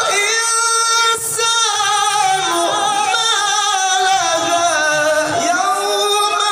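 Male Quran reciter chanting in melodic tilawah style through a microphone, high in his range. He holds one long steady note, breaks briefly about a second in, then descends through wavering, ornamented phrases.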